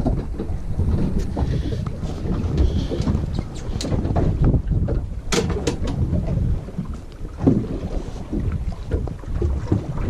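Wind buffeting the microphone in an open boat, a steady uneven low rumble, with a few sharp clicks and knocks from handling on deck, the clearest a little past halfway.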